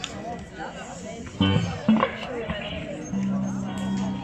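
A short hummed "mmh" through the PA, then a single instrument note held steadily from about three seconds in, over low crowd chatter.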